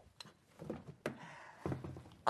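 A few soft knocks and rustles, spaced out, as someone rummages under a counter for a small item.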